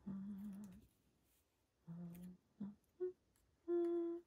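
A woman humming a tune to herself: a few short held notes with pauses between them, the last ones pitched higher.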